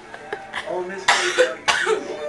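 A person coughing twice in quick succession about a second in, with faint talk around it.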